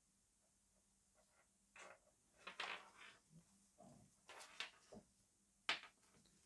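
Handling noise from gloved hands moving and fiddling with wireless earphones and their cable: after a moment of near silence, a string of short rustles and light knocks starts about two seconds in.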